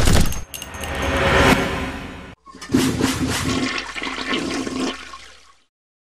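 Sound effects over closing logo animations: a sharp crash, then a rushing, water-like noise that swells and fades, a short break, and a second rushing passage with a low hum underneath that fades out about half a second before the end.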